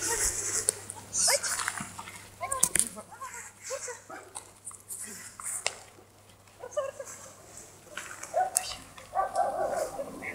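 A young German Shepherd dog giving short barks and whines, in scattered bursts with a few sharp clicks between them.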